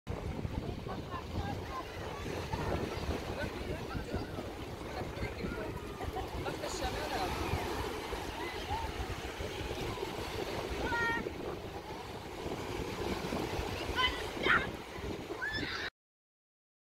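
Small waves breaking and washing up on a sandy beach, under a steady babble of many beachgoers' voices and children's shouts from the water. Two louder shouts stand out near the end.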